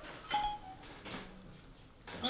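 Short two-note electronic chime from a smartphone voice assistant, the second note slightly lower: the tone that marks the assistant has taken in a spoken request.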